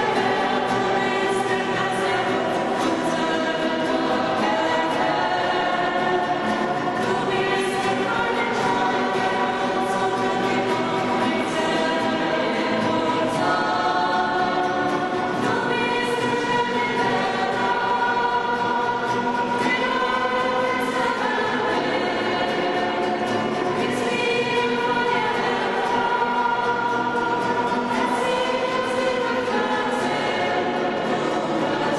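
Voices singing a worship song together, accompanied by strummed nylon-string classical guitars, with long held notes at a steady level.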